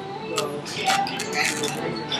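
A few light clinks and clicks over a hum of background voices.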